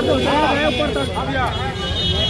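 Several people in a crowd talking and calling out at once, with a low steady rumble beneath.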